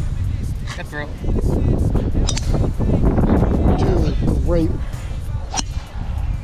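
Golf club striking teed balls on tee shots: two sharp cracks, about two seconds in and near the end.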